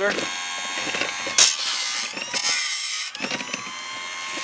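Homemade cam-driven automatic band saw blade sharpener running, its grinder motor giving a steady whine while it grinds the teeth of a band saw blade. Two louder rasping bursts come about a second and a half and two and a half seconds in.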